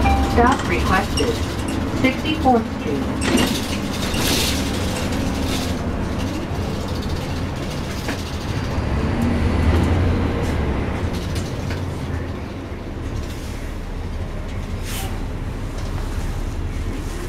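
Interior sound of a moving NABI 40-foot suburban transit bus: steady engine and road rumble, with voices over it in the first few seconds. The low engine hum swells about ten seconds in.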